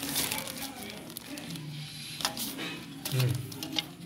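Plastic sheeting crinkling and loose car parts clicking as they are handled, with a few sharp clicks. A low murmured voice comes in briefly twice.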